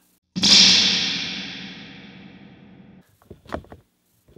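Spring reverb crash from a vintage 1966 Fender spring reverb tank being jolted: a sudden loud metallic boom about a third of a second in, dying away in a long rumbling wash until it cuts off sharply near the three-second mark. A few faint knocks follow near the end.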